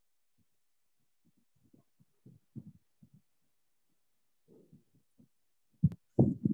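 Faint, irregular low bumps of handling noise on a computer microphone, then one sharp, louder knock near the end.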